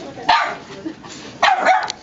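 Puppies barking during rough play: one sharp bark about a quarter second in, then a short run of barks about a second and a half in.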